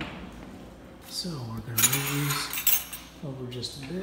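Metal kitchenware clinking as it is handled, with a few sharp clinks in the middle, the loudest about two seconds in. A low voice is heard under it.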